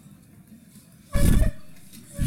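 A man's short, loud vocal outburst close to the microphone about a second in, lasting about a third of a second.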